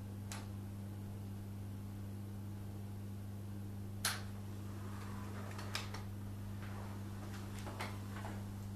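Powered wheelchair being driven, with a steady low hum and a few sharp clicks, the loudest about four seconds in.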